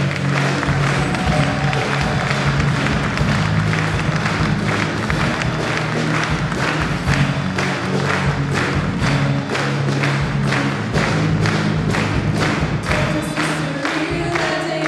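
A live pop band of acoustic guitar, cello, electric bass, drums and keyboard playing a song with a steady beat. The audience claps along in time.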